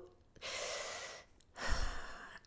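A person's audible breaths close to the microphone between sentences: a long soft inhale about half a second in, then a shorter breath near the end with a low bump under it.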